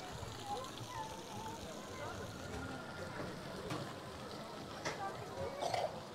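Faint, indistinct chatter of people in the background, over low outdoor ambience with a few light clicks.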